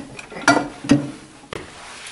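Ceramic bowl and the plate covering it being lifted out of a microwave and set down, with two sharp crockery knocks about half a second and about a second in.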